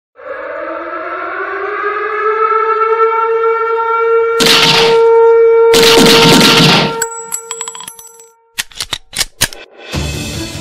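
Produced logo-sting sound effects: a siren-like tone that swells and rises slightly, then holds steady, cut through by two loud blasts of noise about four and a half and six seconds in. After the tone stops, a quick run of clicks follows, then a few sharp cracks near the end.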